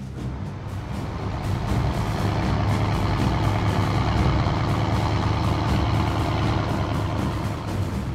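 A steady low rumble that builds over the first two or three seconds and then holds.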